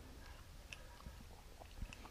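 Faint, sparse clicks of metal parts as a disassembled motorcycle rear brake caliper is handled and turned over in the hands, the loudest click near the end.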